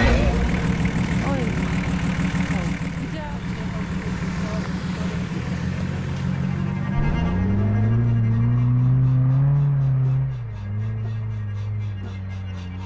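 Off-road 4x4 engines running with a steady low hum and faint voices. About seven seconds in, low bowed-string music swells in, rising slowly and then dropping about ten seconds in.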